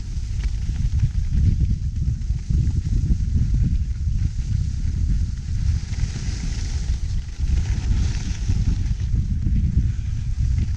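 Wind buffeting the camera microphone during a ski descent, a loud gusting rumble throughout. The hiss of skis sliding over snow rises in the second half.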